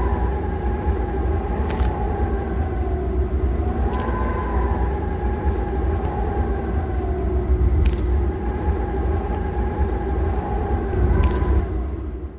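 A steady low rumble with a faint hum that swells and fades about every four seconds, and an occasional soft click.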